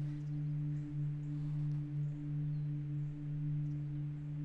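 Background music: a sustained low synth drone holding the same pitch, swelling gently.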